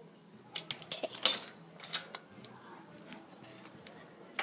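Close handling noise from a phone held against the hand and face: a quick run of clicks and knocks in the first second and a half, the loudest about a second in, then a few light ticks.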